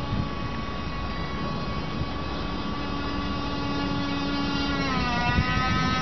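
The small electric drive motor of an RC model frigate whining at a steady pitch. About five seconds in, the pitch dips and then starts to rise again as the throttle changes.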